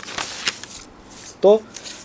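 A rustling, scraping noise for about the first second, then a man says one short word.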